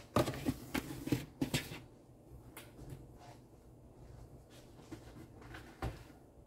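Handling noise as plastic DVD cases are put down and away: a quick run of clicks and knocks in the first second and a half, then quiet room tone with one more knock near the end.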